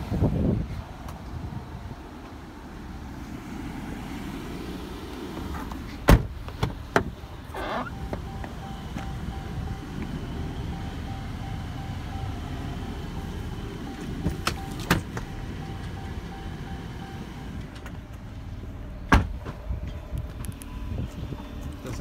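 Wind rumbling on the microphone, broken by sharp clicks and clunks of the Jeep Cherokee's doors and latches being worked. There is a cluster of them about six seconds in, two more midway, and a loud clunk a few seconds before the end.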